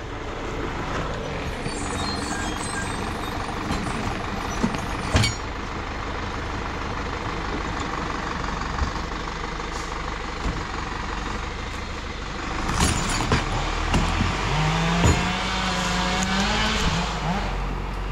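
Zetor Proxima tractor's diesel engine running steadily while it skids logs, with a few sharp knocks along the way. The revs rise for a few seconds near the end.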